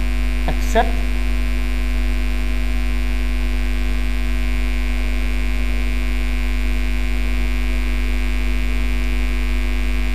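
Loud, steady electrical mains hum with a stack of steady overtones, unchanging throughout.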